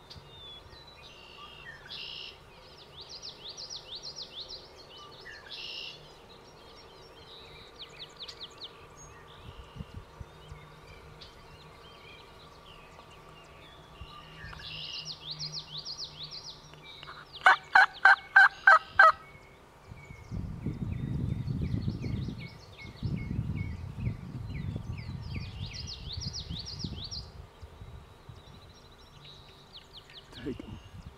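A wild turkey gobbler gobbling once, a rapid rattling run of about eight notes lasting a second and a half, over songbirds singing. A low rumbling noise follows for several seconds.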